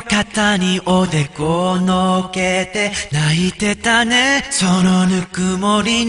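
A male voice singing a cappella, with no accompaniment, in a string of short phrases that glide between notes and hold some notes with a wavering vibrato.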